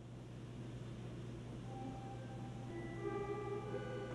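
Soft film score fading in over a steady low hum; long held notes enter a little under two seconds in and build, several overlapping by the end.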